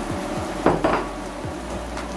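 Diced vegetables and chicken sizzling in a pot on the stove, with two quick clinks of a dish close together a little before the one-second mark.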